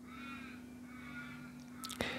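Faint bird calls in the background, wavering and fading out after about a second and a half, over a steady low hum.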